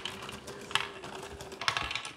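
A Lego Great Ball Contraption module running: small plastic balls click and clatter through its Lego parts, with a faint steady motor hum underneath. Two louder clicks come about three quarters of a second in and just before the end.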